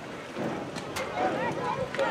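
Several voices talking and calling out at once across a youth football field, with a single sharp knock about halfway through.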